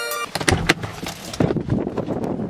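A car door opening as someone climbs out of the car: a few sharp clicks and knocks from the latch, handle and door, over rustling.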